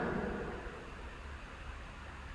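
A pause in speech: faint room tone with a low steady hum and light hiss, the last words fading away in the first half-second.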